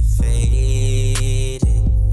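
Instrumental hip hop beat with a heavy, sustained sub-bass and a held synth chord, with percussive hits on top. The bass cuts out briefly and comes back hard about one and a half seconds in.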